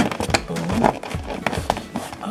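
Handling noise from a foil-lined cardboard light box: irregular taps, clicks and crinkles as a hand presses its support plate down into place.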